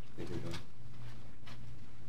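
A brief, low vocal murmur from a person, lasting about half a second just after the start, over a steady low hum in the room.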